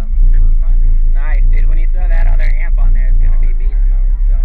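Loud, bass-heavy music played through a wall of four custom Fi BTL subwoofers inside the car's cabin, the deep bass steady and dominating beneath a voice.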